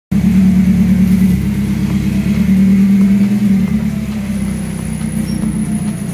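A BMW E30's engine running at low revs as the car backs slowly out of a garage. It grows a little quieter as the car moves away.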